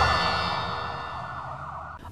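The fading tail of a TV news programme's ident jingle: sustained synthesized tones dying away steadily over two seconds.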